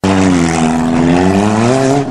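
A small four-cylinder car's engine revving hard as the car races past close by, its pitch dipping and then climbing again, with a steady rushing noise over it.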